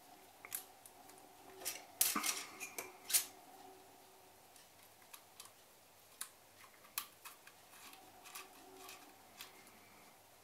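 Faint, irregular metallic clicks and scrapes of small screws and a 2 mm Allen key as a red dot sight's mounting screws are set into their holes and tightened down. The louder clicks come about two to three seconds in.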